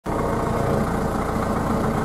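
Tractor engine running steadily while the tractor is driven, heard from inside the cab.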